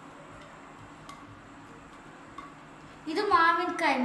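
Quiet room for about three seconds with one faint tap, then a person starts speaking.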